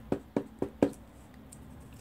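Wood-mounted rubber stamp tapped onto a foam ink pad, four light knocks in quick succession within the first second.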